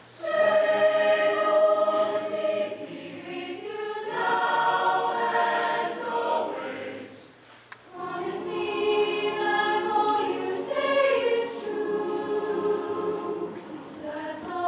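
A large mixed teenage choir singing sustained chords in two long phrases, with a brief pause about seven and a half seconds in.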